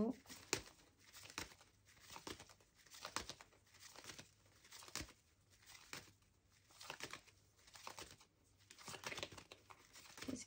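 A deck of tarot cards being shuffled by hand: quiet shuffling strokes in short bursts about once a second, as the next card is about to be drawn.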